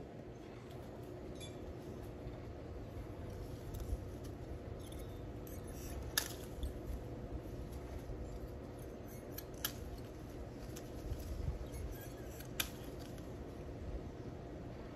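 Hand pruning shears snipping lemon stems off the tree: a few sharp clicks a few seconds apart over a low steady background noise.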